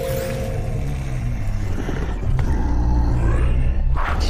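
A film monster's deep, drawn-out growl over background music.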